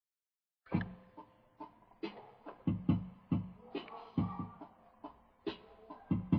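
A hip-hop beat starts after just under a second of silence: repeated sharp drum hits with low kicks, and faint sustained tones between them.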